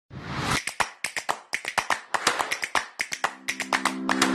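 Logo-intro sound effects: a short rising swish, then a quick, uneven run of sharp snaps, with a low held tone coming in near the end as the intro music starts.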